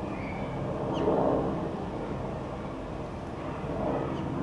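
Steady rumble of distant traffic, swelling briefly about a second in, with a faint bird chirp at about the same moment.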